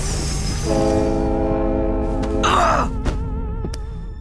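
Cartoon score and sound effect: a high glittering tone slides downward as a bracelet shatters, then a held chord of several steady tones for about a second and a half, cut off by a short burst of noise about two and a half seconds in.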